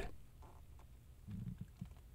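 Near silence: quiet room tone, with a faint, brief low sound past the middle.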